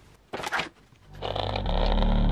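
A brief scrape and rustle of powder tipped from a plastic scoop through a plastic funnel into a plastic bottle, about half a second in. Electronic background music with a steady bass then fades in over the last second and becomes the loudest sound.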